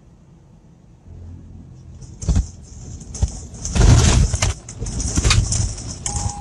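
Truck cab jolting and rattling hard as the truck runs off the highway into the grassy median. A low rumble starts about a second in, then loud irregular bangs and clattering begin about two seconds in and peak around the four-second mark.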